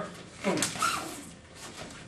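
A man's voice saying an emphatic "boom" about half a second in, with a brief rustle of noise around the word, then quieter room sound.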